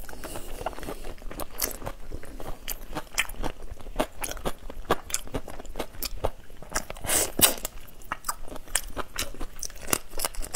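Close-miked crunching and chewing of whole shell-on shrimp: a rapid, irregular run of crisp crunches as the shells break between the teeth, loudest about seven seconds in.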